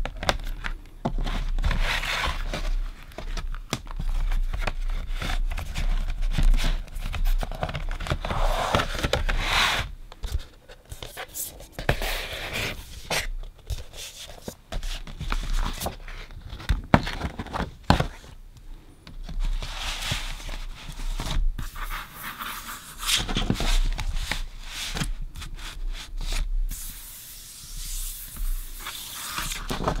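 Glossy LP-sized printed inserts and cardboard sleeve panels being handled: paper sliding and rubbing against paper, with frequent light taps and rustles as sheets are laid down and turned over.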